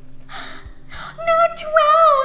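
A young woman's two short, breathy gasps of laughter, then a long drawn-out spoken 'No'.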